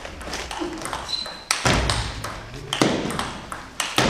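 Table tennis rally: the ball clicks rapidly back and forth off the bats and the table, with two much louder hits about a second and a half and nearly three seconds in.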